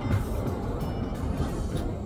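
City tram passing close by, a steady low rumble of wheels and running gear, with music playing over it.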